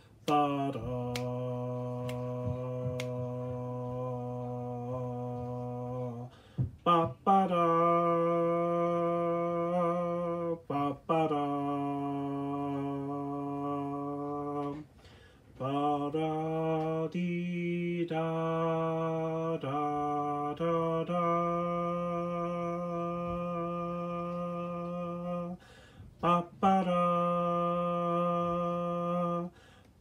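A man singing a slow low part on a syllable like 'ba', holding long steady notes of one to five seconds with brief breaks and changes of pitch between them. A few faint clicks sound in the first few seconds.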